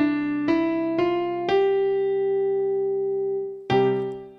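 Electronic keyboard with a piano sound playing a slow hymn melody in C major over a held low C and G (root and fifth) in the left hand. Three or four melody notes come about half a second apart, then one note is held for about two seconds and fades, and a new note starts near the end.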